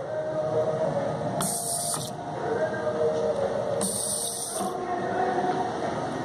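Sink faucet running into the basin: a steady rushing hiss, with two brief sharper hisses about one and a half and four seconds in.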